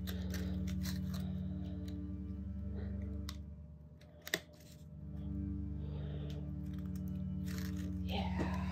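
Soft background music of sustained low notes that fades out briefly about halfway and comes back, with light crinkling of paper flowers being pressed down and a single sharp click near the middle.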